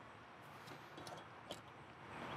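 Near silence: faint background hiss with a single small click about one and a half seconds in.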